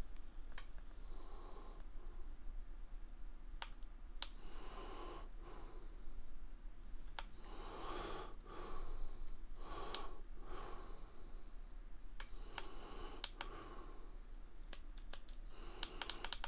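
Faint clicks from handling a Hohem iSteady smartphone gimbal as it is switched off at the button on its handle. Soft breaths come in between, close to the microphone.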